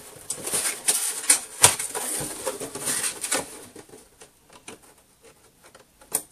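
Thin cardboard Priority Mail Regional Rate box being folded and handled by hand: a busy run of scrapes, creaks and taps for the first three and a half seconds, then only a few faint ticks.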